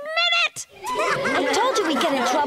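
Children's voices laughing in a cartoon: one high, whinnying laugh that breaks off about half a second in, then several children laughing together from about a second in.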